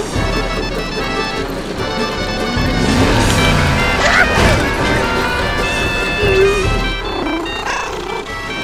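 Cartoon background music under a mix of slapstick sound effects, with sliding-pitch effects and sharp hits between about three and four seconds in.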